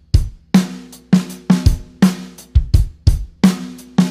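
Acoustic drum kit playing a groove of kick drum, snare and hi-hat, the snare landing on the sixteenth-note offbeats. Strikes come two to four a second, and the snare rings briefly after each hit.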